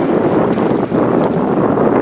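Wind buffeting the camera's microphone in a steady, loud rush.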